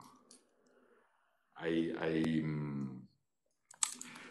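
A man's hesitant speech, a drawn-out "I, I" through a desk microphone, between short pauses, with a few sharp clicks just before he speaks again near the end.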